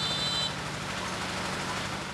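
A motorcycle engine running as the bike comes up a lane, under a steady hiss of street noise. A brief high-pitched tone sounds right at the start.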